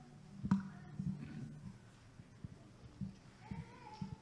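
Quiet hall with scattered soft knocks and handling noises, a sharper click about half a second in, and a low steady hum that fades away early.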